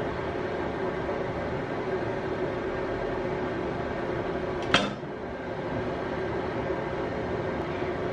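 A steady mechanical hum of a running machine in a small room, with a single sharp knock of a knife against a plastic cutting board a little past halfway.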